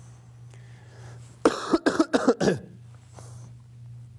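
A person coughing and clearing the throat: a quick run of about four coughs between a second and a half and two and a half seconds in, over a faint steady low hum.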